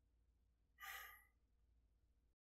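A man's short sigh about a second in, otherwise near silence.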